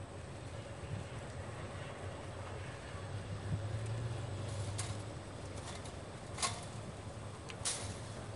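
Low, steady drone of a distant motor that swells slightly midway, with a few sharp clicks in the second half.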